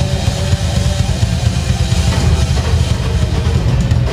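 Live rock/metal band playing: electric guitars and drum kit in a dense, steady wall of sound.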